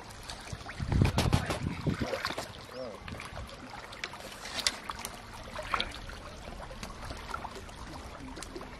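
Water sloshing around people wading waist-deep, with wind buffeting the microphone, loudest about a second in, and a few short voice sounds.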